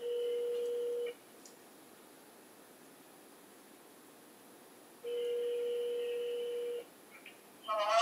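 Telephone ring tone over a conference line: two steady electronic tones, the first about a second long, the second nearly two seconds long about five seconds in, with low hiss between them, as a call comes in. A brief voice is heard just before the end.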